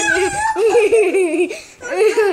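Children laughing loudly in high-pitched peals, with a brief pause about a second and a half in.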